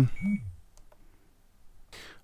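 One short, high, steady beep from a Radiomaster TX16S radio transmitter's speaker while it shows a startup warning, followed by two faint clicks about a second in.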